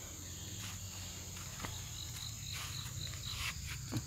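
Faint insects chirping steadily, with a run of short, rapid high chirps in the second half. A couple of soft crunches of footsteps on dry bamboo leaves.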